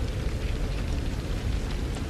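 Steady low rumbling noise with hiss underneath, the background ambience of a war-film scene's soundtrack, with no dialogue or clear music.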